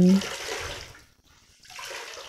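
Water running and splashing from a cloth mop head wrung by hand into a bucket of water, in two spells: a louder one for the first second and a weaker one starting about one and a half seconds in.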